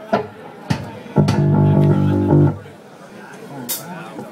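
An amplified guitar chord is struck about a second in, rings steadily for over a second, then is cut off suddenly. A few sharp knocks come before it, and a short click comes near the end.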